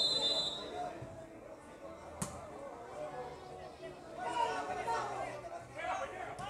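Spectators' chatter around an ecuavoley court, with one sharp slap about two seconds in, typical of a hand striking the ball on the serve. A brief high steady tone sounds at the very start.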